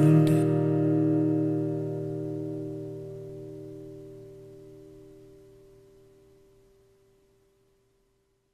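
Final chord of an acoustic guitar, struck just after the start and left to ring, fading away over about seven seconds.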